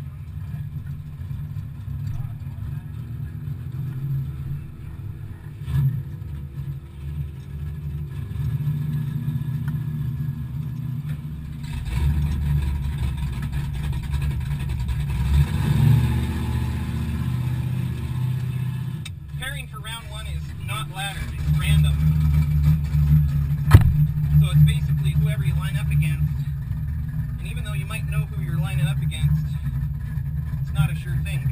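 Race car engines idling with a steady low rumble, heard from inside a car cabin, swelling louder about twelve seconds in and again in the last third. From about the middle on, a distant voice is heard over the engines, and a single sharp click comes near the end.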